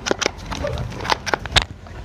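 Handling of a plastic pressure-washer spray gun: a string of sharp clicks and knocks, as its trigger and trigger-lock button are worked, with a heavier knock about a second and a half in. The washer's motor is not running.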